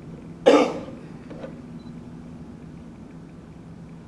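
A single short cough about half a second in, then quiet room tone with a faint steady low hum.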